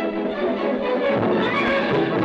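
Orchestral film-score music, a steady full ensemble with strings and brass.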